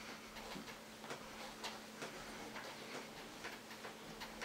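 Faint, fairly even light ticking, about two ticks a second, over a quiet room with a low steady hum.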